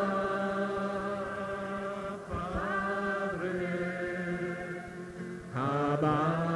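A congregation singing a slow, wordless chant in long held notes, with the pitch changing a couple of seconds in and again near the end.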